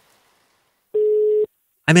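A single steady telephone tone, one beep about half a second long, in the middle of near silence.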